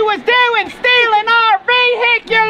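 A high voice chanting the same note over and over in short syllables, about three a second, each one dipping in pitch as it ends.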